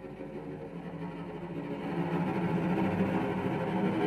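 Two cellos bowing a dense, low sustained cluster of close pitches with a rough, gritty edge, swelling steadily louder.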